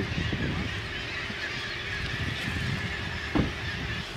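A large flock of gulls calling together, a dense chorus of many overlapping calls.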